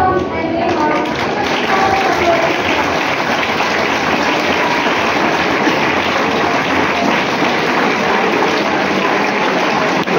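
A large audience clapping steadily: a dense, even applause that takes over as a voice fades out in the first couple of seconds.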